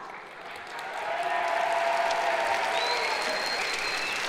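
Large audience applauding, swelling about a second in and holding steady, with voices mixed in.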